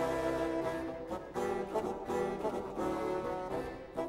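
Renaissance dance music played by a small early-music ensemble on brass, with sackbuts (early trombones) carrying sustained chords that move from note to note.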